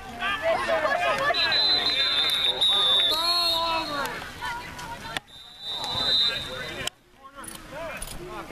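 Spectators' voices shouting over one another as a referee's whistle blows a long shrill blast about a second and a half in, then a short second blast a little past the middle. The sound cuts out briefly twice near the end.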